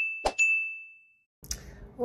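Subscribe-button animation sound effects: a short click about a quarter second in, over a high, ringing notification-bell ding that fades out after about a second.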